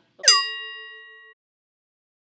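An edited-in sound effect: a quick downward swoop into a bell-like ringing tone that fades over about a second and then cuts off abruptly.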